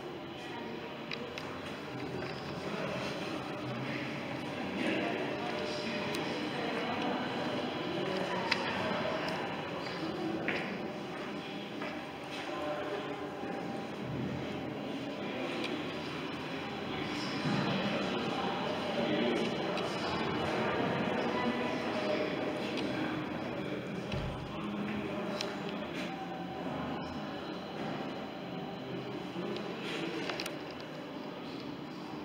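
Indistinct chatter of people talking in the background, with no words clear enough to make out, over a steady low background rumble.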